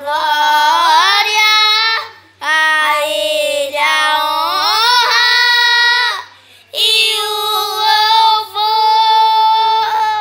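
Two children singing a Portuguese-language gospel song without accompaniment, in three long phrases of held, sliding notes with short breaths between them.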